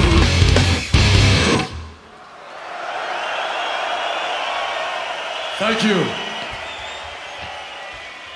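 A live death metal band finishes a song with distorted guitars and drums, closing on a few heavy final hits about a second and a half in. Crowd noise from the audience follows, with a short shouted voice about six seconds in.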